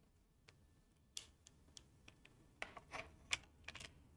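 Faint, irregular clicks and taps over quiet room noise, becoming busier in the second half.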